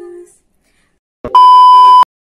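A loud, steady high beep, the TV colour-bar test tone used as an editing transition, starting with a click a little past a second in and cutting off abruptly.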